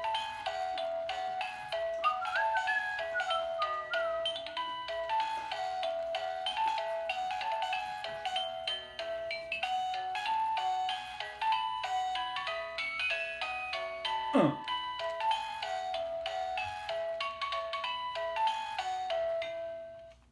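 Miniature toy-piano Christmas ornament playing a Christmas tune electronically, a steady run of short notes with a melody over a lower accompaniment; the tune cuts off near the end.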